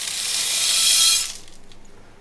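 Small pumice grains poured from a metal scoop into a plastic pot: a steady hiss of falling grit that grows louder, then stops about a second and a half in.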